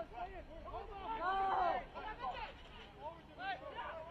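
Men's voices shouting short calls of "on!" during open play, with overlapping chatter.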